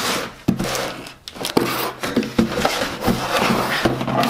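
A knife slitting the packing tape on a cardboard box, then the cardboard flaps being pulled open: scraping and rustling with several sharp knocks.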